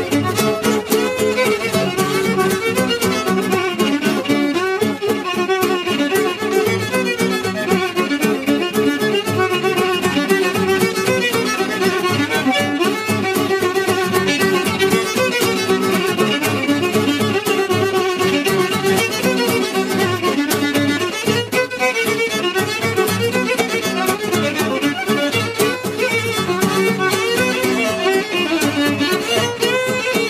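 Fiddle playing a fast hora melody, accompanied by strummed acoustic guitar.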